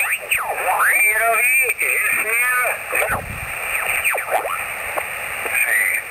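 Yaesu FT-817 receiving single sideband on the 20 m (14 MHz) band while being tuned across it. Whistles sweep up and down in pitch, and off-tune voices come through garbled, all in thin, narrow radio audio.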